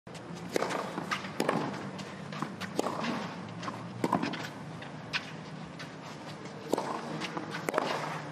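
Tennis rally on a clay court: a sharp racket-on-ball strike about once a second, starting with the serve, mixed with ball bounces and the players' footsteps on the clay.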